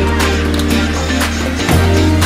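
Background music with a steady beat and a held bass line.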